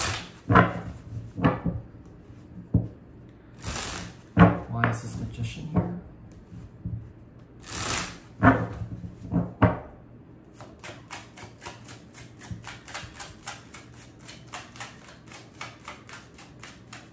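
Tarot cards being shuffled and handled. Irregular rustles and knocks for the first ten seconds, then a fast, even run of card clicks, about five or six a second, as the deck is shuffled.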